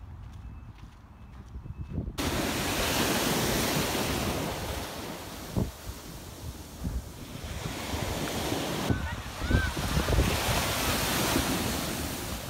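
Ocean surf breaking and washing up a sandy beach, starting suddenly about two seconds in after a quieter stretch, then swelling and easing as the waves come in. Wind buffets the microphone throughout.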